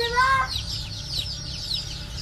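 A bin full of ducklings peeping: a chorus of many short, high, downward-sliding peeps.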